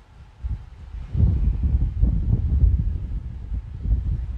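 Low rumbling handling noise on the microphone, like wind buffeting it, as a paracord-wrapped pine knife sheath is picked up and moved close to it. The noise builds about a second in.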